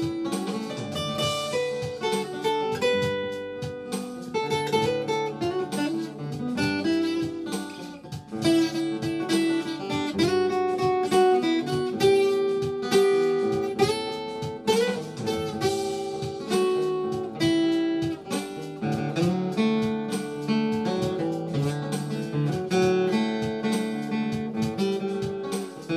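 Acoustic guitar playing an instrumental break with no singing: picked melody notes over strummed chords, running on with a steady rhythm.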